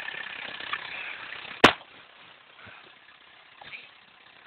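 Volvo 240 engine idling, heard through an open door. About one and a half seconds in the car door shuts with a single sharp bang, and after it the idle is muffled and much quieter.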